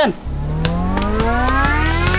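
Rising synth sweep over a steady low bass drone, climbing evenly in pitch throughout: a music riser building into the montage track.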